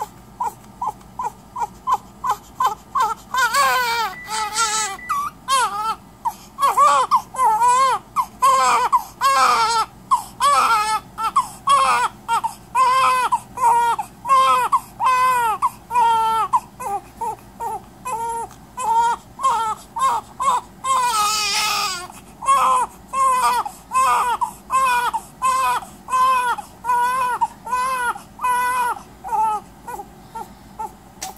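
Newborn baby crying in short, rhythmic, pitched cries, about two a second, each rising and falling, keeping on without a break.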